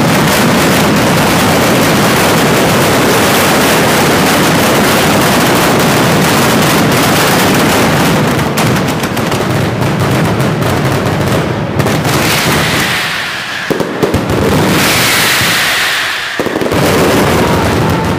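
Mascletà firecrackers exploding in a dense, continuous roll of bangs, the ground-level barrage of a Valencian mascletà. About eight seconds in it starts to break up, and later there are brief hissing rushes between the bangs.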